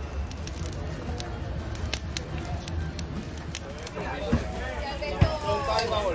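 Voices of people talking in the background, clearer from about four seconds in, over a steady low rumble with scattered light clicks and a couple of soft knocks.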